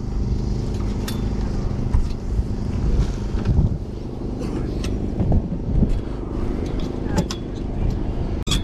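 Plastic and wooden clothes hangers clicking and sliding along a rail as jumpers are flicked through by hand, a few sharp clicks over a steady low hum.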